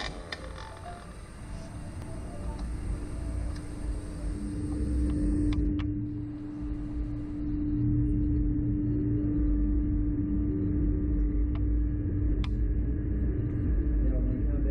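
Steady mechanical hum from a slingshot ride's machinery as the two-seat capsule is drawn down into launch position, over a low rumble. The hum gets louder about four seconds in and again around eight seconds, and a few sharp clicks come in the second half.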